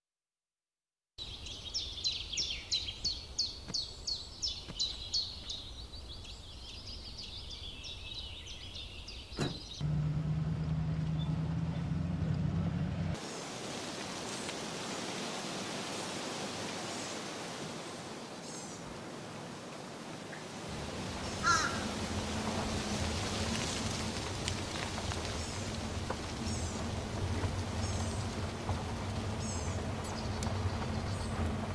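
Outdoor forest sound: a bird calling in a quick repeated series, about three calls a second, for the first several seconds, then scattered bird chirps over a quiet outdoor background. Later a low, steady vehicle engine hum comes in.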